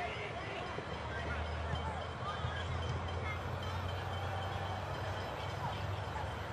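Outdoor ambience at a football ground: a steady low rumble with faint, distant shouts and voices from players and spectators.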